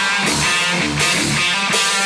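Heavy metal song: a rhythmic electric guitar riff in a break where the heavy bass and drums drop back to a few sparse low hits.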